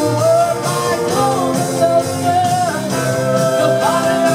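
A live Northern Soul band playing a song, with several voices singing over the instruments.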